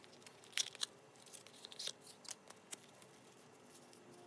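Close handling of a small cardboard box and a small round container: a few sharp clicks and light rustles of cardboard and packaging, busiest in the first three seconds and then thinning out.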